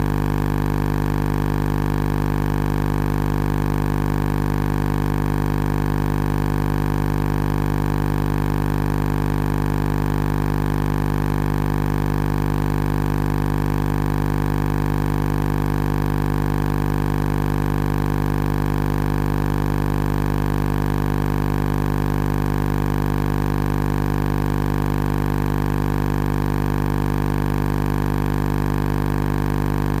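A loud, steady hum made of several constant tones that does not change at all, with no chanting heard.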